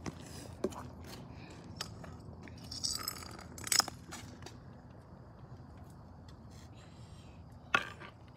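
A golf iron striking a walnut on a concrete sidewalk: a few short, sharp clicks and knocks, the loudest about four seconds in and again near the end, over a quiet steady background.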